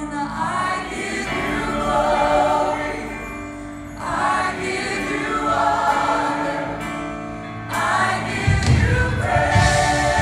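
Live gospel choir singing with a female lead vocalist, backed by keyboard and band, in three sung phrases. A much heavier bass comes in about eight and a half seconds in.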